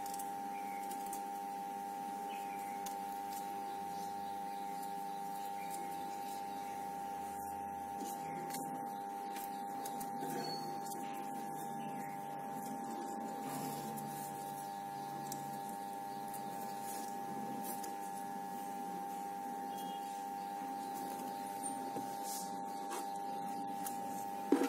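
A steady high-pitched background hum held at one pitch, with faint soft clicks and rustles as a squeeze bottle of white glue is worked along a crepe-paper strip.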